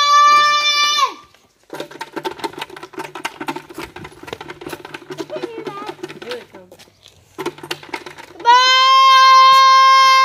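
A high voice giving two long, steady, held calls to bring the horses in, one at the start and one from about eight and a half seconds in, each about two seconds long and dropping off at its end. Between the calls, rustling and knocking from the phone being carried.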